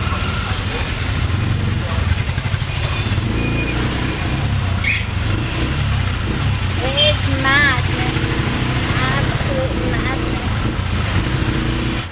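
Tuk-tuk (auto rickshaw) engine running steadily, heard from inside the open cabin as it drives through busy street traffic.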